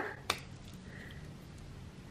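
One sharp click from a Semilac lipstick's push-button case as its pen-like end cap is pressed to open it.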